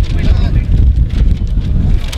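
Wind buffeting the camera microphone in loud, uneven low rumbles, with faint voices of people standing nearby.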